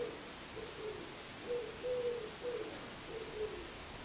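A pigeon cooing faintly in a repeated phrase of several low, soft notes, one of them held longer, the phrase starting again about every three seconds.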